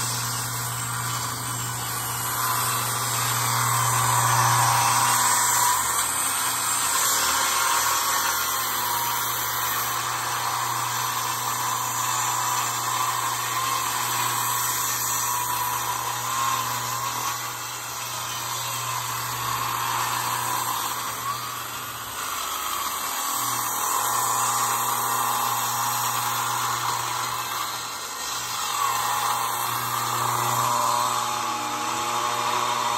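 Circular beam saw with a swing table running continuously while cutting across a gang of stacked wooden rafters at a steep bevel, its pitch wavering up and down as the blade's load changes. The cut takes a lot of power.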